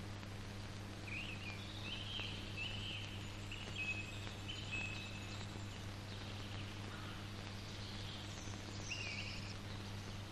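Faint birds chirping in short scattered calls over a steady low hum.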